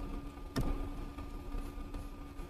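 A single computer mouse click about half a second in, over a faint steady electrical hum.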